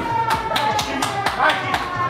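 Quick hand claps, several a second, over background music with steady held notes.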